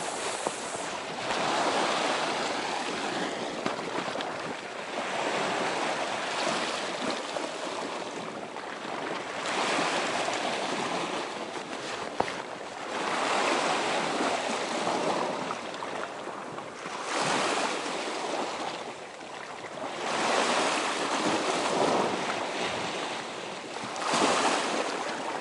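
Sea waves washing against shore rocks, surging up and falling back every three to four seconds.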